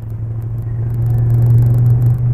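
A car's engine running with a steady low drone, growing louder as the car approaches.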